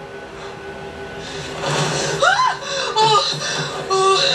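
Television drama soundtrack playing in the room: a steady music score, joined about halfway through by louder, short gliding vocal sounds.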